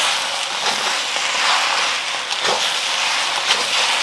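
Beef, flat rice noodles and bean sprouts sizzling steadily in a hot steel wok as they are stir-fried, with a few light scrapes of the metal spatula against the wok.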